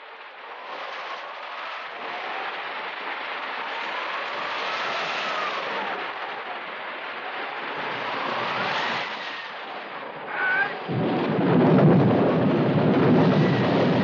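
Storm sound effect: steady heavy rain with wind whistling in rising and falling gusts. About eleven seconds in, a louder rumble of thunder and downpour swells in.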